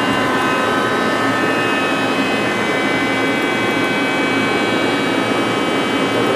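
Takisawa TC-4 CNC lathe running: a steady machine noise carrying several fixed high whining tones, unchanged throughout.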